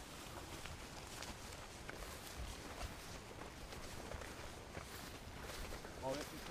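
Faint footsteps through long grass: a scatter of short, irregular rustles and soft steps.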